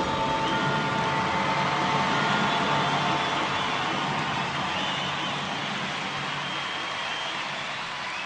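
Concert audience applauding and cheering at the end of a song, with the band's last held note dying away in the first couple of seconds. The applause slowly fades.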